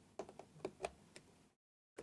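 Small clicks of metal and plastic at a laptop keyboard as a small flathead screwdriver probes its edge for a gap to pry it free: about six faint, quick clicks in the first second and a half.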